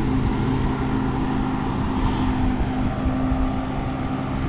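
Wind rumbling on the microphone of a camera carried on a moving bicycle, over a steady low hum.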